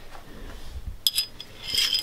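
Light metallic clinks and rattles from a dipstick being worked in and out of its tube on a tractor's diesel engine while the oil level is checked. They come in two short clusters, about a second in and again near the end.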